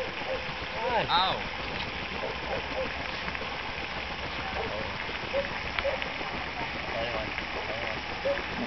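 Faint voices with a brief laugh and an "ow" about a second in, over a steady outdoor hiss.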